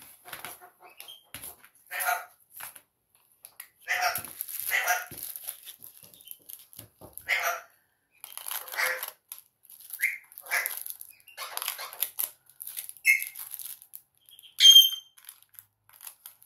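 Plastic bags of diamond-painting drills crinkling and scissors snipping, in short scattered bursts. A dog vocalises at intervals, and a sharp high squeal comes near the end.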